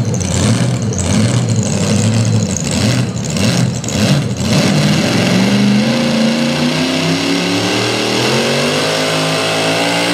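Pro mod pulling tractor's engine revving in rough, choppy bursts while hooked to the sled, then rising steadily in pitch from about five seconds in and holding at high revs as the pull gets under way.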